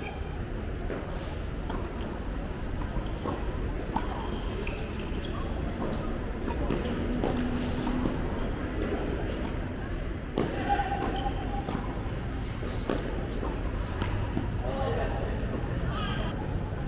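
Tennis balls struck by racquets during a doubles rally: sharp single hits every second or few. People's voices call and talk in between.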